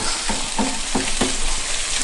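Potato latkes sizzling as they shallow-fry in butter and oil in a cast iron pan. A run of light spatula taps and scrapes against the pan sounds through the first second or so.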